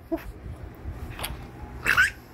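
A single short 'woof' at the start, then a baby's laughter, ending in a loud high-pitched squeal near the end.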